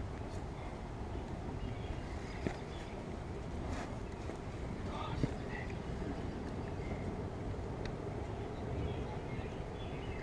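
Steady low rumbling background noise with faint voices, broken by two small clicks, one about two and a half seconds in and one about five seconds in.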